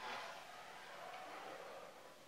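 Whiteboard marker drawn along a ruler across a whiteboard: one faint, drawn-out scraping stroke that lasts nearly two seconds and fades near the end.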